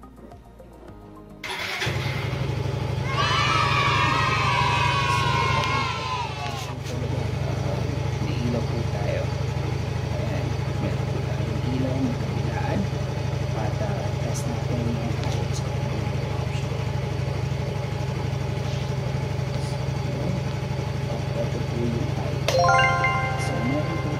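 Yamaha Mio i 125 scooter's single-cylinder four-stroke engine started on the electric starter about a second and a half in; its revs flare and fall back over a few seconds, then it idles steadily.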